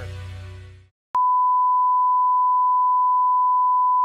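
Closing music fades out in the first second. After a brief gap, a loud, steady, single-pitch test tone starts and holds: the reference tone that runs with colour bars at the end of a broadcast.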